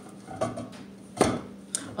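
A few sharp clicks and knocks from kitchen utensils being handled at the stove, the loudest a little past the middle, over a faint steady low hum.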